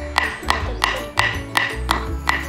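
Wooden mallet driving a wooden stake into the ground: six sharp knocks evenly spaced at about three a second, each with a short ring, over background music.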